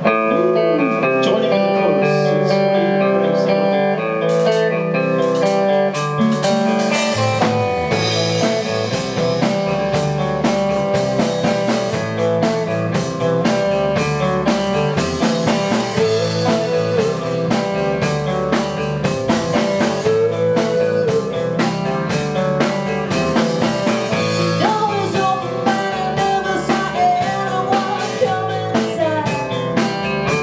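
Live band playing: electric guitar leads the opening, then bass guitar and drum kit come in about seven seconds in and carry on with a steady beat.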